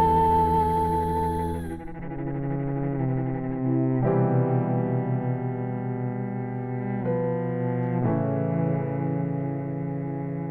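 A woman's sung note ends about two seconds in; after that a bowed cello plays long sustained notes, moving to a new note every one to three seconds.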